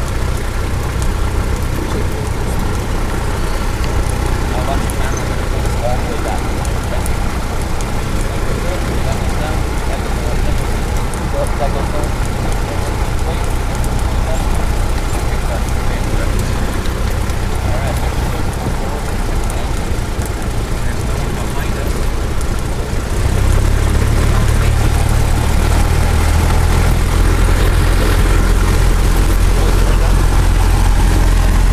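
Light airplane's engine and propeller drone heard inside the cabin, steady throughout. About three-quarters of the way in, the low rumble gets louder.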